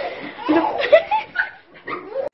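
A dog barking in short calls, mixed with a person's voice and a chuckle.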